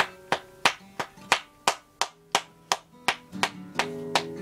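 Acoustic guitar chords with a steady, sharp percussive hit about three times a second. The chord tones thin out around the middle while the hits keep going.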